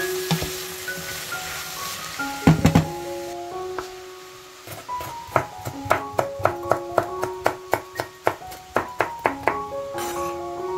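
Knife chopping a red chili on a wooden cutting board, quick sharp chops about three a second, over background piano music. Before that, vegetables sizzle in the pot, with a few loud knocks about two and a half seconds in.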